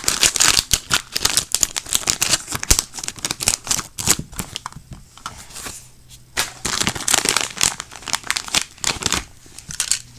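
Plastic packaging crinkling and rustling as it is handled and opened, in dense irregular crackles with a brief lull in the middle.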